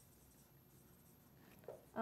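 Near silence, with faint scratching of a marker writing on a whiteboard.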